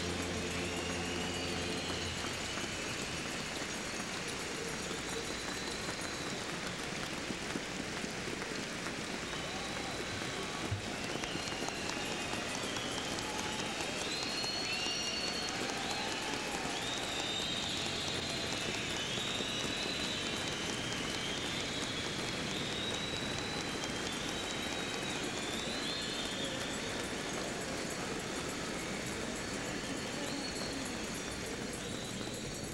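A large arena crowd applauding and cheering at length, with shrill whistles rising over the clapping. A steady low chord sounds at the start and stops about two seconds in.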